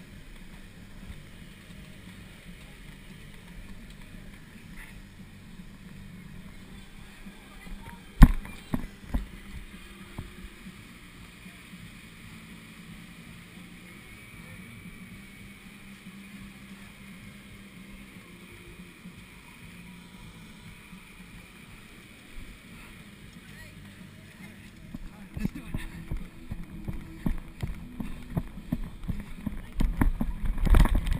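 Steady low rumble of wind and handling on a body-worn action camera, with one sharp knock about eight seconds in and a quick run of irregular knocks and bumps over the last few seconds.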